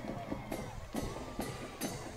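Music with a steady drum beat, about two strikes a second.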